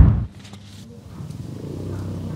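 Deep, rumbling whoosh of a TV news transition sound effect that cuts off about a quarter second in, followed by quieter outdoor background with a steady low hum.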